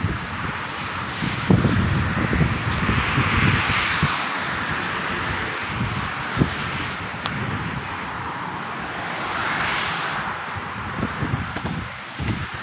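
Outdoor motor-traffic noise: a broad rushing sound that swells and fades twice, around four and ten seconds in, with uneven low wind rumble on the microphone.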